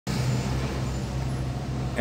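A car engine idling with a steady low hum, heard from inside the cabin while stuck in stopped traffic.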